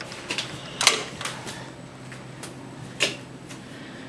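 A few scattered light clicks and knocks in a small room, the loudest about a second in and another near three seconds.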